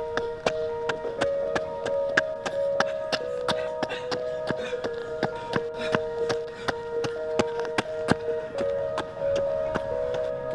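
Background music: sustained held notes over a quick, steady clicking beat, about three to four clicks a second.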